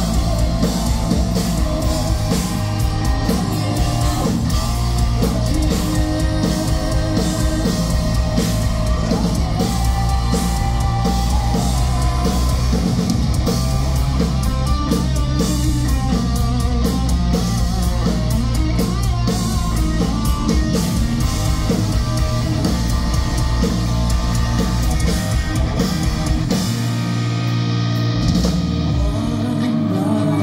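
Live hard-rock band playing loudly: electric guitars, bass guitar and drum kit, without vocals. Near the end the drums and bass drop out, leaving the guitar ringing on its own.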